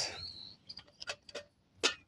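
Light metallic clicks as an aluminium camping kettle is settled onto a folding pocket stove in a stainless tray: a few faint ticks, then one sharper click near the end.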